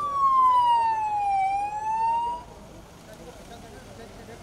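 A vehicle siren sounds one short sweep: the tone falls in pitch for about a second and a half, rises again, and cuts off about two and a half seconds in.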